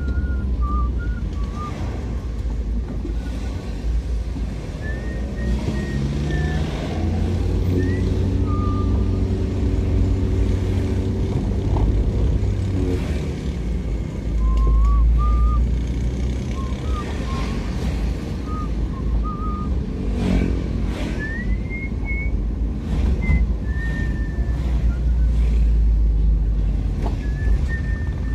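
Steady low rumble of a moving road vehicle: engine and road noise from the ride. Short, thin, wavering whistle-like tones come and go over it.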